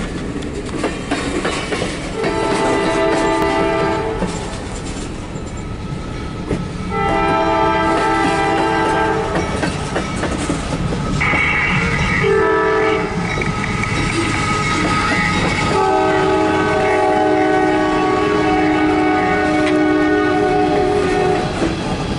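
Diesel locomotive's multi-note air horn sounding the grade-crossing signal: two long blasts, a short one, then a final long one, as a CSX empty coal train approaches the crossing. Under it runs the continuous rumble and clatter of rail cars rolling past.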